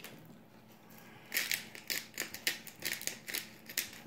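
Plastic fork scraping and tapping against a paper plate as food is stirred: a run of irregular light clicks and scrapes starting about a second in.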